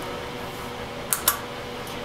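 Two quick clicks a little past a second in, over a steady low hum with a faint steady tone: timer buttons being pressed on a coffee roaster's control panel.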